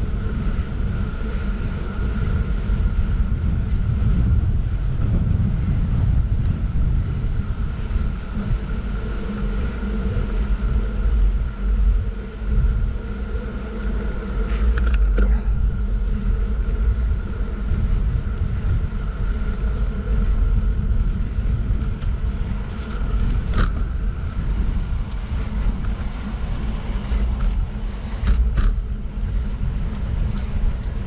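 Wind buffeting the microphone of a camera on a moving bicycle: a steady low rumble with a faint steady whine above it, and a few sharp ticks in the second half.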